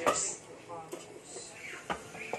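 A sharp knock as the hot air fryer basket is set down, then a second smaller knock near the end, with faint voices behind.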